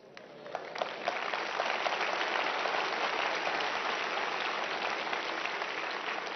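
A large audience of schoolchildren applauding, swelling over the first couple of seconds and then holding steady.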